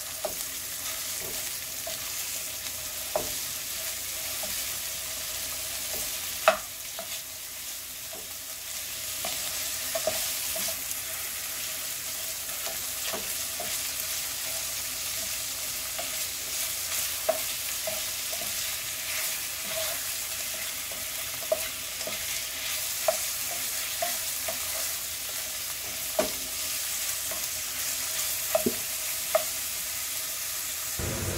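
Ground beef and diced onion sizzling in olive oil in a nonstick pan, with a steady hiss. A wooden spatula scrapes and knocks against the pan at irregular intervals as the meat is broken up and stirred, the loudest knock about six seconds in.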